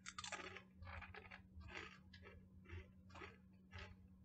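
Faint crunching and chewing of Takis Xplosion rolled corn tortilla chips, in short crackly crunches about two a second.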